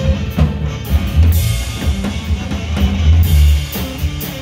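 Live rock band playing an instrumental passage: electric guitar, electric bass and a drum kit with cymbal hits, loud and steady throughout.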